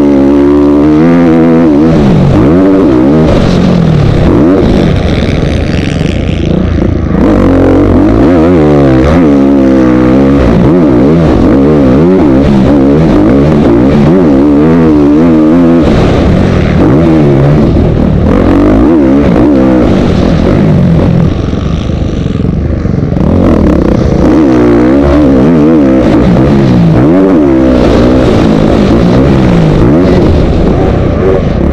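Motocross dirt bike engine recorded from an on-board camera, very loud and close, its pitch climbing and falling over and over as the rider works the throttle and gears around the track.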